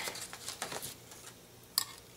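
Faint rustling of die-cut cardstock being lifted and handled, then a single short sharp click near the end.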